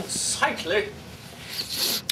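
White cloth rustling and brushing against the microphone: a hissy swish at the start and another near the end, with a brief vocal sound between them.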